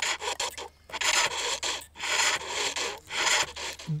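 A cutting tool scraping a shale armlet as it turns on a pole lathe, in repeated rasping strokes about once a second with short pauses between them as the lathe reverses.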